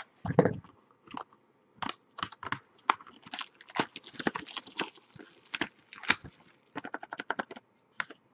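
Hands opening a trading-card pack: a run of irregular crinkles, rustles and clicks as the packaging is handled and the graded card inside is pulled out.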